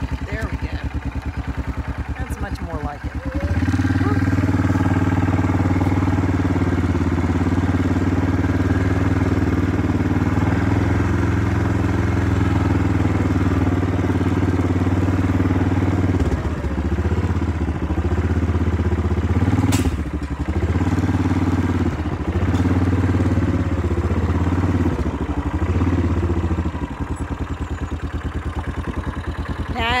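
Yamaha Kodiak quad bike's single-cylinder four-stroke engine idling. A few seconds in it steps up to a steady louder run as the quad is driven. From about halfway the throttle eases off and on several times, and near the end it settles back to idle.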